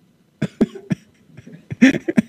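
A person laughing in short, separate bursts: a few quick ones about half a second in, then more near the end.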